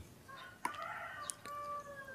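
A faint, drawn-out animal call in the background, lasting a little over a second and falling slightly in pitch at the end.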